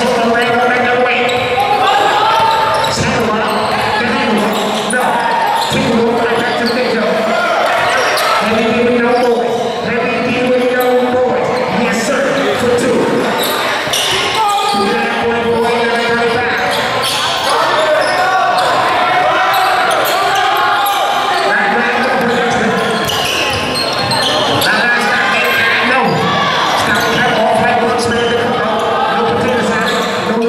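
Indoor basketball game in an echoing gym: a basketball bouncing on the hardwood floor among the continual calls and chatter of players and spectators.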